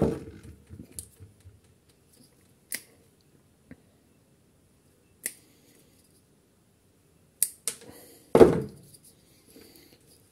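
Scattered sharp clicks and snips of side-cutting pliers working an old knot out of a plastic recoil-starter handle, with one louder knock near the end.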